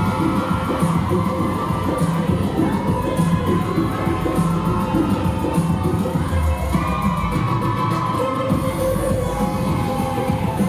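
Loud bhangra music over the sound system, with a steady, evenly repeating drum beat and a melody line, and an audience cheering along.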